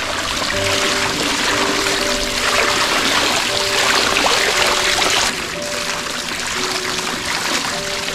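Swimming-pool water spilling over a tiled overflow edge: a steady rushing splash. Soft background music with held notes plays underneath.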